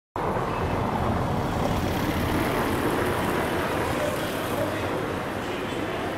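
Steady outdoor city background noise, a constant traffic-like rumble with no distinct events.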